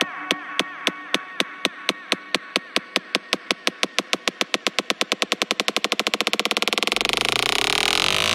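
Progressive psytrance build-up: a sharp synthetic drum hit repeats, starting at about three a second and speeding up steadily until the hits blur into a buzzing roll, and deep bass comes back in near the end.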